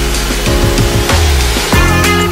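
Tropical house music in an instrumental stretch: held bass notes and synth tones over a drum beat, with no vocals.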